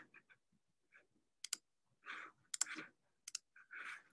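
A few faint, sharp computer mouse clicks, some in quick pairs, over near silence.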